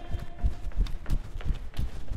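Running footsteps on a concrete floor: a quick, regular series of sharp footfalls.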